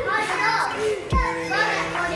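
Young children's voices, shouting and chattering while they bounce on a trampoline, with two low thuds of landings on the trampoline mat, one at the start and one about a second in. Faint background music.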